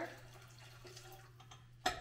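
Hot water poured faintly into a mixing bowl, followed by a sharp knock near the end.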